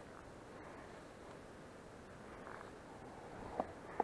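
Faint steady outdoor background hiss with no clear source, and a small click or two near the end.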